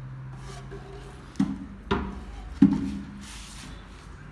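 Three sharp wooden knocks, each with a short hollow ring, as an unfinished bağlama body is handled; the last is the loudest.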